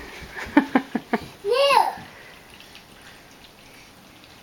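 A toddler babbling: a few short vocal syllables, then one high call that rises and falls about a second and a half in.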